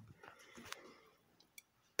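Near silence: faint room tone with two small clicks, one a little past the middle and one near the end.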